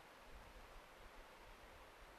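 Near silence: faint steady hiss of room tone through a lapel microphone.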